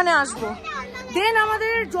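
Speech only: a high-pitched voice talking.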